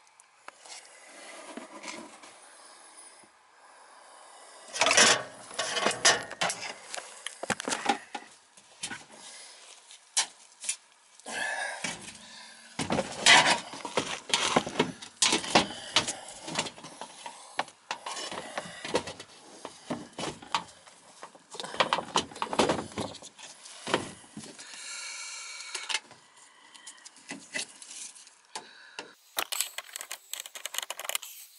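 Irregular scrapes, rubs and knocks of hands and tools working on an air handler's sheet-metal cabinet and drain pan, with the loudest knocks about five and thirteen seconds in.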